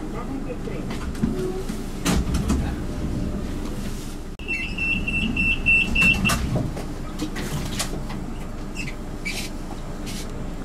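Commuter train door-closing warning: a rapid series of high beeps at one pitch, lasting about two seconds, starting a little before halfway through. A knock comes as the beeps end, over the carriage's background noise and faint voices.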